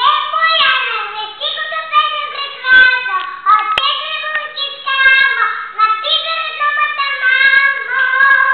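A young girl singing a song in a high child's voice, with long held notes, and a single sharp click near the middle.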